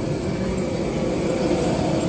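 Steady jet aircraft noise on an airport apron, a constant rushing hum with a thin high whine over it.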